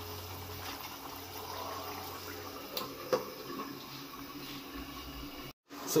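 A pan of chicken korma gravy cooking on a high gas flame: a faint, steady bubbling hiss, with a small click about three seconds in and a brief dropout near the end.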